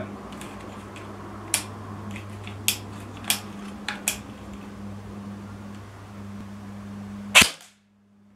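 CYMA MP5 airsoft electric gun firing: several sharp snaps about a second apart, then a louder one near the end.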